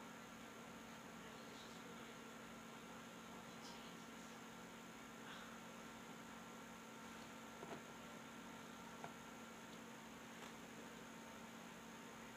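Near silence: a faint steady electrical hum over room hiss, with a couple of tiny clicks about two-thirds of the way through.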